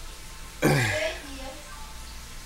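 A person clearing their throat once, a short rasping burst a little over half a second in that falls in pitch.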